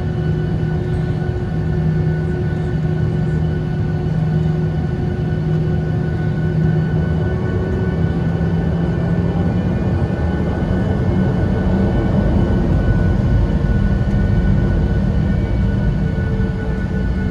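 Boeing 737-800's CFM56 jet engines running at taxi power, heard inside the cabin: a steady drone and whine over a low rumble, edging up in pitch and loudness in the second half.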